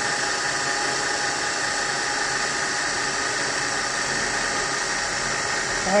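Metal lathe running with a boring bar cutting into an aluminium motorcycle crankcase, enlarging the cylinder opening for a big-bore piston. A steady machine sound with several steady tones, taking off sealant along with the metal.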